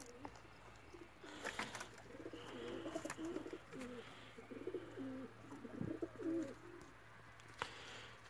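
Domestic pigeons cooing in a loft: a faint series of low, wavering coos from about a second in until near the end.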